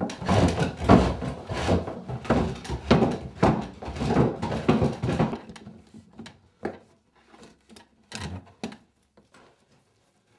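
Wooden chair knocking and scraping on a wooden floor as a man tied to it rocks and shuffles it, a rapid run of thuds for about five seconds that thins to a few scattered knocks.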